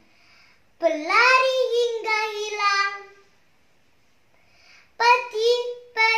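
A young girl's voice declaiming a line of poetry in a drawn-out, sing-song delivery, with long held vowels. One phrase starts about a second in and lasts a couple of seconds; a second phrase begins near the end.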